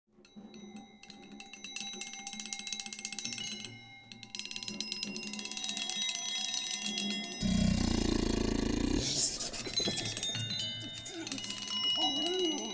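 Music of ringing metal percussion: many sustained high metallic tones over fast rattling strokes. About seven and a half seconds in, a loud low rumble enters and lasts about a second and a half.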